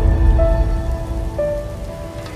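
Logo-sting intro music: a deep bass rumble under held synth notes that step to new pitches twice, the rumble fading toward the end.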